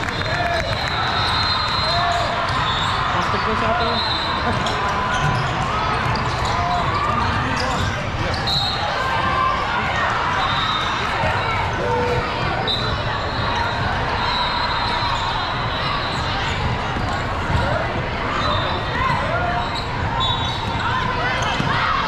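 Basketball game in a large hall: a ball bouncing on the hardwood court and many voices of players and spectators talking, with repeated brief high-pitched tones throughout.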